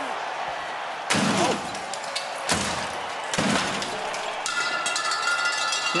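A sword striking a custom motorcycle: three heavy crashing blows, the first about a second in, the next two about a second apart.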